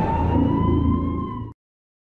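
Siren sound effect in a TV program's title sting: a single wail rising slowly in pitch over a low rumble, cut off abruptly about one and a half seconds in.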